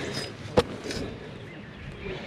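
Clothes on hangers being pushed along a rack: fabric rustling, with one sharp click of a hanger about half a second in.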